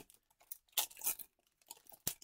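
Foil wrapper of a Pokémon TCG Fusion Strike booster pack being torn open and crinkled by hand, in a few short rips and crinkles from about half a second in.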